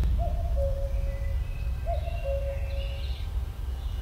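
Forest ambience: an owl hooting twice, each hoot a long steady note of about a second, over a low steady rumble with faint bird chirps.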